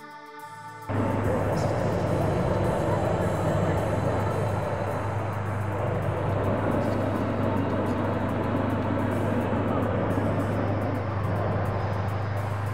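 Background music cuts off about a second in, giving way to the live sound of the balloon launch field: a loud, steady rushing noise with a low hum under it.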